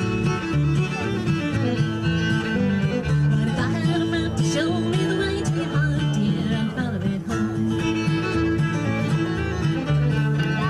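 Live acoustic bluegrass instrumental: a bowed fiddle plays the melody with slides and wavering notes over strummed acoustic guitar and a walking upright bass.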